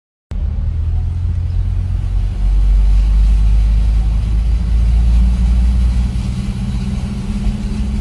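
Toyota Land Cruiser's engine running with a steady low rumble, heard from inside the cabin while the vehicle drives slowly through a flooded street; it grows louder a little over two seconds in.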